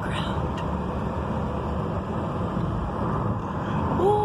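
Steady road noise inside a moving car's cabin: tyre and engine hum.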